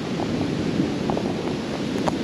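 Small surf washing up on a sandy beach in a steady rush, with wind on the microphone.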